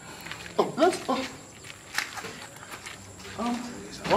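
Brief spoken exclamations from a person's voice, once about a second in and again near the end, with a single sharp click about two seconds in.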